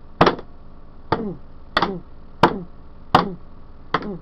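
A toy Barney dinosaur being beaten: six sharp blows in a steady rhythm, roughly every two-thirds of a second, each followed by a short falling grunt.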